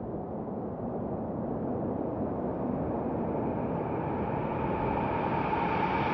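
A rushing noise swell that grows steadily louder and brighter, with a faint held tone coming in near the end: an ambient build-up opening a song.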